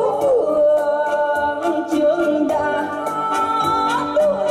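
A woman singing a Vietnamese song live into a microphone, holding long notes, over electronic keyboard backing with a steady beat.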